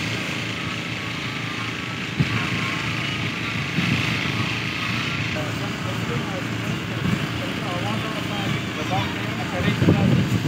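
An engine running steadily, with people's voices and shouts over it; the sound changes abruptly about five seconds in.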